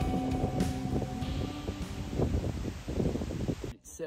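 Background music trailing off, then wind gusting across the microphone with rustling, before cutting off suddenly near the end.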